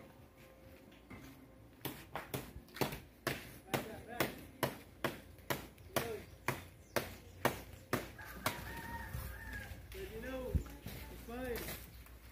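A blade chopping at the stalk of a coconut bunch at the top of a coconut palm: a run of sharp, regular strikes, about two a second, starting about two seconds in and stopping near the ten-second mark.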